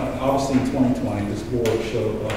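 Speech: a presenter's voice talking in a meeting room.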